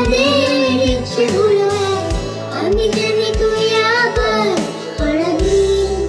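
A little girl singing a Bengali song with long, held notes over backing music with a steady low beat.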